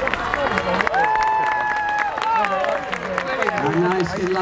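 Crowd clapping and cheering, with many separate claps throughout and one long held cheer about a second in.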